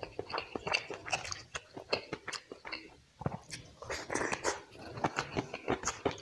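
Close-miked eating sounds: wet chewing and lip smacks from a mouthful of curry and rice, in short irregular clicks, with fingers squishing rice into curry gravy on a steel plate.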